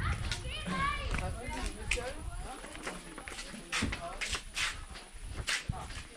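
Children's voices in the background, with a series of sharp, irregular knocks in the second half.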